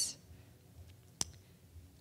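Quiet room tone, broken by one sharp click a little over a second in.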